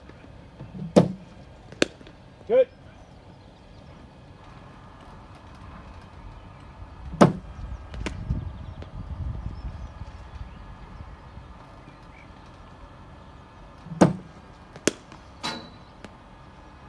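Cricket bat striking balls fed by a bowling machine: three deliveries about six or seven seconds apart, each heard as a loud sharp crack followed within a second by a lighter knock. The last is a drive.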